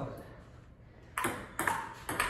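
Table tennis rally: a ping-pong ball hit twice, two sharp hollow clicks about half a second apart a little over a second in.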